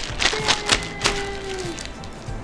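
A few people clapping, about four claps a second, dying away after a second or so, with a child's voice holding one long note over it.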